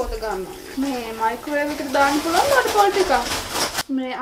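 A woman speaking, with a faint hiss behind her voice in the second half; the sound cuts off abruptly near the end.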